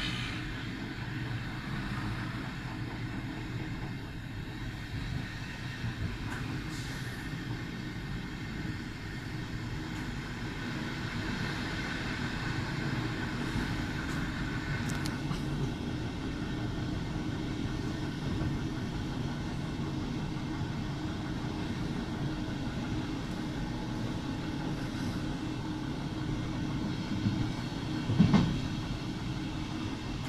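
Passenger train running along the track: a steady rumble of wheels on rail, picked up inside the train at its end door. A sharp knock stands out near the end.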